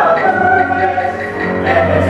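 Mixed-voice chamber choir singing held chords in several parts, moving to a new chord about a second and a half in.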